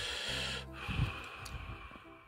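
A long breathy hiss of a person blowing on a steaming spoonful of tteokbokki sauce, over soft background music.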